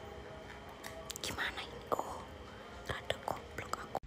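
Soft rustling and clicking of a wired earphone cable and its plastic packaging being handled, in several short hissy bursts from about a second in.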